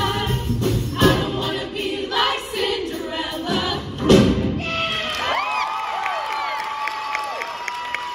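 Show choir singing with live band accompaniment, ending on a loud final hit about four seconds in. Then audience cheering, with high gliding shouts and scattered clapping.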